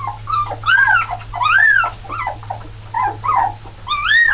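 A litter of 17-day-old Alaskan Malamute puppies whimpering and squealing: a string of short, high cries that rise and fall in pitch, several overlapping, a few each second.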